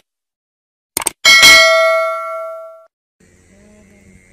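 A single bell-like chime, preceded by a couple of quick clicks, rings out loud and fades away over about a second and a half.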